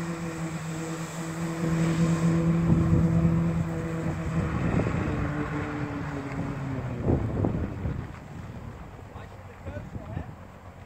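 Jet ski engine running steadily under load to drive a FlyHero water-jet board, with the hiss of the water jets, which stops about two seconds in. About five seconds in the engine drops in pitch as it throttles back, and by about eight seconds it has faded to a low idle.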